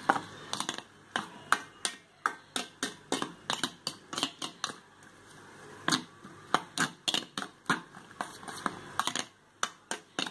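A spoon beating raw egg and chopped vegetables in a stainless steel bowl: a regular clinking of the spoon against the metal, about three strikes a second, with a brief pause about halfway and another near the end.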